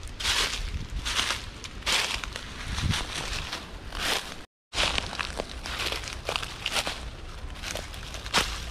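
Footsteps crunching through dry leaf litter at a walking pace, a bit more than one step a second. A short dropout of complete silence falls a little past halfway.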